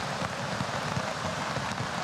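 Heavy rain pouring down steadily: a continuous, even hiss.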